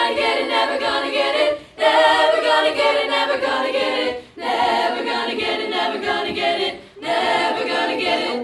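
A school choir singing a cappella, many voices together in sung phrases broken by short gaps about two, four and seven seconds in.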